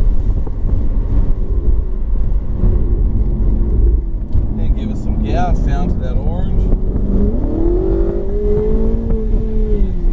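Ferrari 488's twin-turbo V8 heard from inside the cabin over heavy low road and wind rumble. About seven seconds in, the engine note climbs as the car accelerates onto a straight, then holds steady, dipping slightly near the end.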